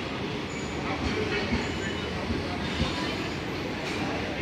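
Indian Railways passenger coaches rolling past along the platform: a steady, even rumble of steel wheels on the rails.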